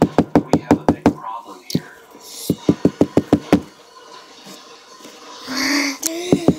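A fist knocking rapidly on a tabletop: a quick run of knocks, about six a second, then a pause, then a second run of about six knocks.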